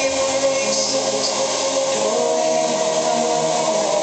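Hardcore electronic dance music from a DJ set played loud over a party sound system, with held synth chords; the deep bass drops out about halfway through.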